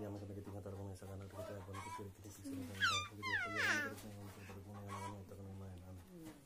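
A chicken calling in the background: a few short squawks that fall in pitch, about three seconds in, over a steady low hum.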